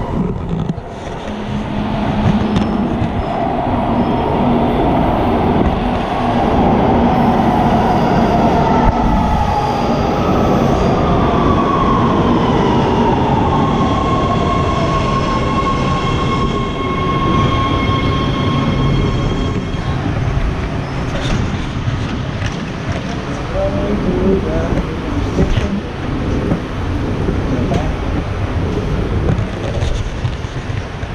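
Los Angeles Metro Red Line subway train pulling into an underground station: a loud rumble, with a whine that falls in pitch over several seconds and steady high tones in the middle. The sound eases off about twenty seconds in.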